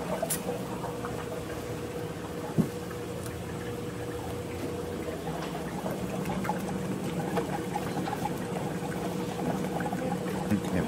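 Liquid flavouring poured from a can into the hopper of an Emery Thompson 12-quart batch freezer, over a steady low hum.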